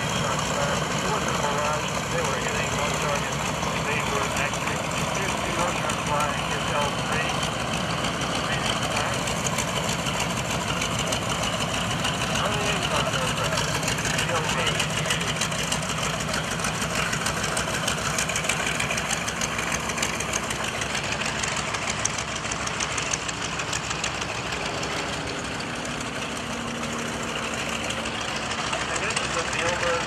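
Piston engines of light single-engine WWII liaison planes droning steadily as they fly past overhead, easing slightly near the end.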